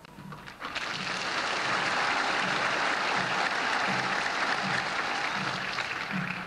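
Large crowd applauding, a dense clatter of clapping that builds up within the first second, holds steady and eases slightly near the end.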